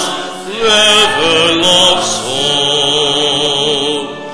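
Hymn singing: voices holding long notes with vibrato, with a short break between phrases at the start.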